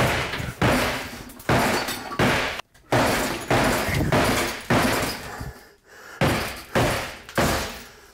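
Claw hammer striking a particle-board kitchen countertop, about eight heavy blows roughly a second apart, each a sharp crack that trails off as the board is broken into pieces for removal.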